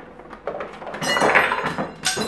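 Lemons tumbling out of a cardboard cereal box into a ceramic bowl: a run of clattering knocks and thuds that builds about half a second in and is loudest just past the middle.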